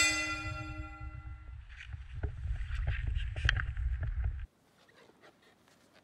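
A single bell-like chime, struck once and ringing out over about a second and a half. A low wind rumble on the microphone runs under it and cuts off suddenly about four and a half seconds in.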